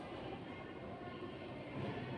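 A faint, steady low rumble of background noise.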